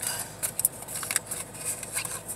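Small cardboard cosmetics box being opened by hand and the bottle slid out: light rustling and scraping with a few small clicks.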